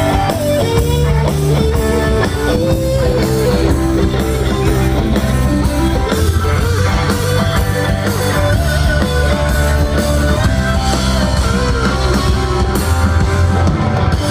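Live rock band playing an instrumental passage: a lead guitar melody over a drum kit and a heavy, steady low end.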